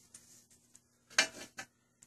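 A couple of short, light metallic clinks about a second in, from a rusty plasma-cut steel plate and a small hand tool being handled.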